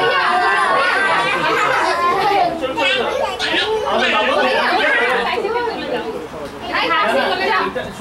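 Several people talking over one another in a room: overlapping chatter with no single clear voice, dipping briefly about six seconds in.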